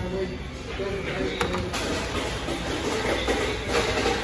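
Indistinct background voices over the busy noise of a fast-food restaurant, with one sharp knock about a second and a half in.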